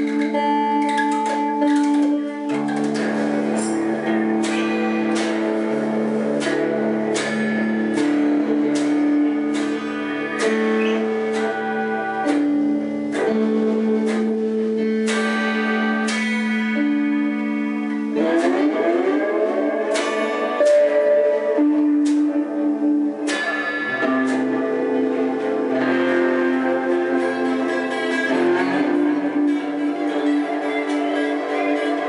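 Improvised electric guitar music: a Telecaster-style electric guitar picked note by note over held low notes. Two rising sliding sweeps come a little past the middle.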